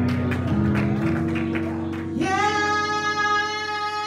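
Electronic keyboard music with singing: struck notes and chords, then from about two seconds in a single long held note.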